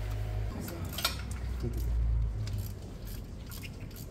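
Metal hand tools clinking and clicking against each other and the bike: a sharp click about a second in, then a quick run of clicks near the end, over a low rumble in the first half.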